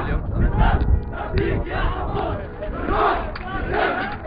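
A crowd of men shouting and chanting while marching, many voices overlapping, with a low rumble on the microphone.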